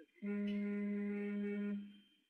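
A single steady low hum, one held pitch, lasting about a second and a half before fading out.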